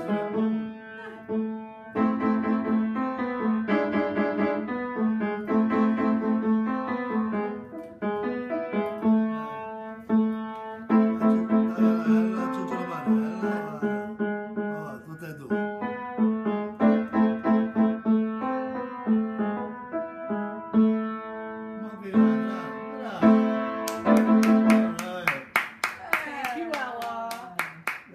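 A child playing a simple tune on an upright piano, one low note struck over and over beneath the melody. Near the end, hand claps and voices join in.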